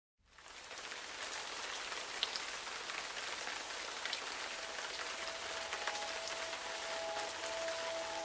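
Steady rain falling, with scattered sharp drips. Music with long held notes comes in softly about halfway through and grows.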